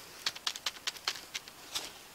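Keys being pressed on the standard full-size keyboard bundled with an HP SlimLine desktop: about a dozen light, irregular key clicks, stopping just before the end.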